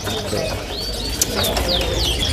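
Caged birds in a bird-market kiosk chirping, with short high whistled notes and quick downward-sliding calls in the second half, over a steady low background hum.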